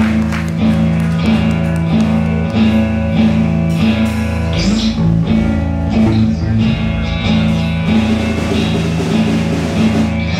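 Live band playing an instrumental passage: acoustic guitar, electric bass and drums, with sustained held notes over a steady bass line.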